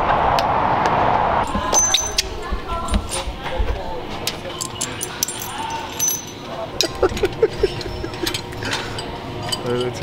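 A steady rushing noise for the first second and a half that cuts off abruptly, then light metallic clinks and clicks of small metal hardware being handled, scattered through the rest, over faint background voices and music.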